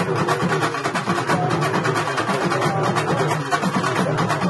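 Urumi melam drum ensemble playing: urumi hourglass drums struck in a fast, continuous, even rhythm, with a wavering pitched tone sounding over the rapid strokes.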